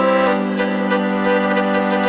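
Looped vocal music built on a BOSS RC-505mkII loop station: a sustained, reed-like layered chord pad that moves to a lower chord shortly after it starts, with only faint percussive hits under it.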